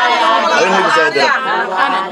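A group of voices chanting together in a repeated 'aiyah' refrain, many voices overlapping.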